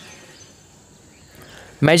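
Faint steady background noise with no distinct event, then a voice starts speaking near the end.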